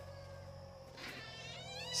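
A faint, high, wavering animal call begins about halfway through, over a low steady hum.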